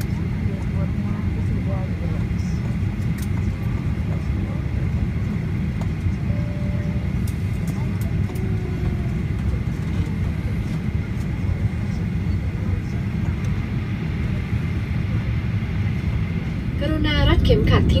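Airliner cabin noise on the ground: a steady low rumble of the engines and air conditioning with a thin steady whine, as the jet taxis. Near the end a female cabin-crew announcement begins over the public-address speakers.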